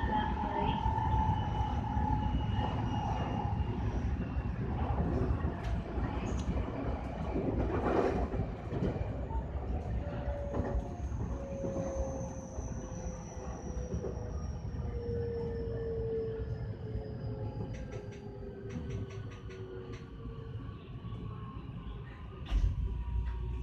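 Electric commuter train running along the rails, heard from the driver's cab, with a steady low rumble. From about halfway through, a whine falls slowly in pitch and the sound eases off as the train slows into a station under braking, with a few clicks near the end.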